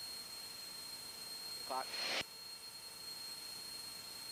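Faint steady hiss with a thin, steady high whine from a light aircraft's headset intercom and radio feed. A brief snatch of a voice comes through about two seconds in.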